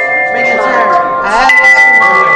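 Several hand chimes ringing together in overlapping, sustained tones, with new notes struck about half a second and a second and a half in. People are talking beneath the ringing.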